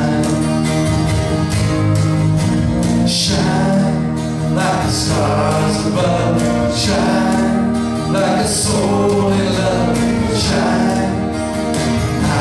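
A live acoustic band playing a song: singing voices over strummed acoustic guitars, a harmonium's held chords and a steady cajon beat.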